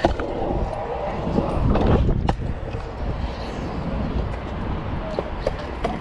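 Pro scooter wheels rolling on concrete, with wind rumbling on the body-mounted GoPro microphone and a sharp clack a little over two seconds in.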